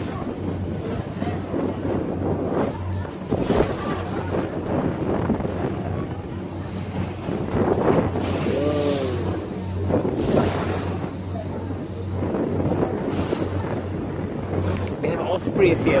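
A motor boat's engine runs with a steady low hum, under wind buffeting the microphone and water rushing along the hull. A brief voice comes in about eight seconds in.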